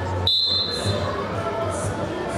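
Referee's whistle: one short, steady, high blast of about three-quarters of a second, restarting the wrestling bout, over the murmur of an indoor arena crowd.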